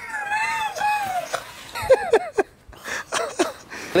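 A man's drawn-out, high-pitched cry from a hard slip and fall on snow, followed by short bursts of laughter.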